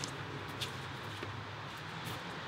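Steady low background rumble and hum, with a couple of faint clicks about half a second in.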